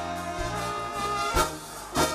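Live band playing the closing bars of a song: held chords over drum hits, with a loud cymbal-and-drum accent about a second and a half in and another right at the end, before the music rings out.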